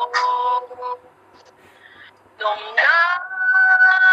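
A woman singing a short phrase. After a pause of about a second, her voice slides up into a long, steady held note near the end.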